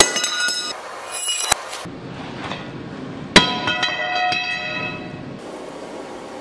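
Steel striking steel three times, ringing after each strike. The first and third strikes are loudest and each rings on for a second or two before fading. They come from the tongs and the freshly oil-quenched blade being handled.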